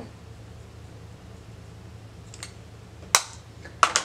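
Quiet room hum, then two sharp clicks near the end, less than a second apart, as makeup items are handled and set down.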